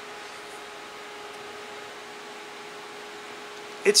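Steady machine hum with hiss, a fan-like drone carrying a faint constant tone; a man's voice comes in right at the end.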